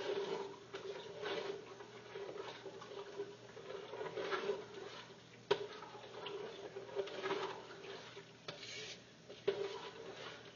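A spoon stirring thick mole sauce in a large metal stockpot: irregular scraping and sloshing sweeps, roughly one a second, with a sharp clink against the pot about halfway through. A steady low hum runs underneath.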